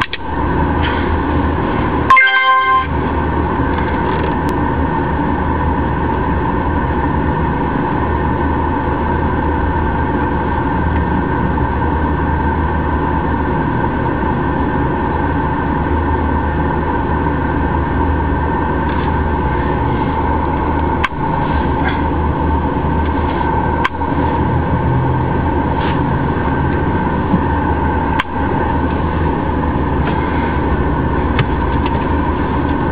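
Steady car-cabin rumble and hum, with a short, loud beep about two seconds in.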